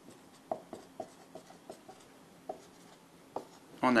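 Marker pen writing on a whiteboard: a series of short scratchy strokes as letters are written, pausing in the middle and picking up again near the end.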